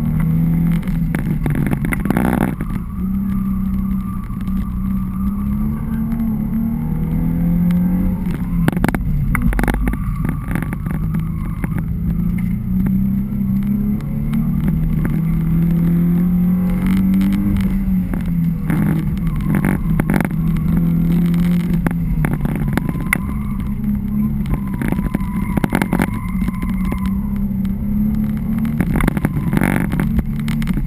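Car engine heard from inside the cabin on an autocross run, its pitch rising and falling again and again as the car accelerates and slows through the course.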